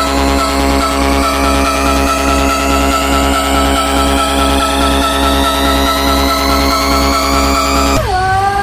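Vinahouse electronic dance music in a build-up: a steady pulsing bass and a fast regular tick under a synth sweep that rises slowly in pitch throughout.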